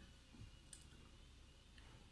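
Near silence: room tone with a low hum and a couple of faint clicks.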